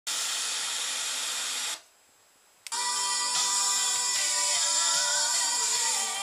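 Sony ST-SB920 FM tuner scanning: loud static hiss, then the audio mutes for about a second while it searches, and with a click a station locks in and music plays.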